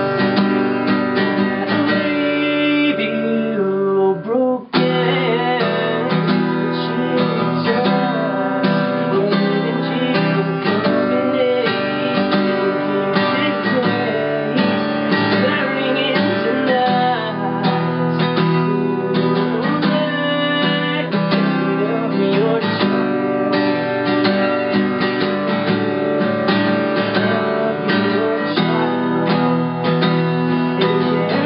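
Acoustic guitar strummed steadily with a man singing over it. The playing breaks off briefly about four and a half seconds in, then picks up again.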